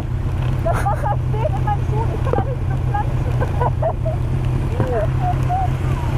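Yamaha R1's inline-four motorcycle engine idling steadily at a standstill, a low even rumble. Faint, muffled bits of voice and laughter come and go over it.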